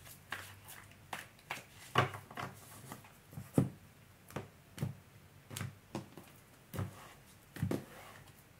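Tarot deck being shuffled by hand: a run of soft, irregular card slaps and taps, about two a second, the loudest around two and three and a half seconds in.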